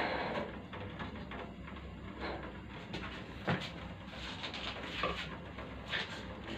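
A few light knocks from handling a stainless steel steamer pot, over a faint steady hiss.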